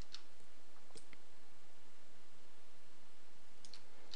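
A few faint, sharp clicks, about a second in and again near the end, over a steady low hum and hiss from the recording setup. The clicks come while a line is being drawn on the screen.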